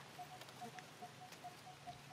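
Faint outdoor ambience: a short, high chirp repeating steadily about five times a second, with a few light crackles of dry leaves underfoot.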